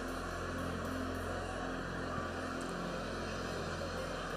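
A congregation praying aloud all at once, a steady murmur of many voices, over soft sustained keyboard chords.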